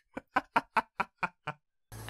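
A short, staccato laugh: seven quick, evenly spaced "ha" bursts, about five a second, which stop after about a second and a half.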